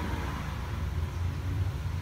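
Steady low background rumble with a faint even hiss, no distinct events.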